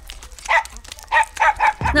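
A small dog barking several short barks while jumping up at a person.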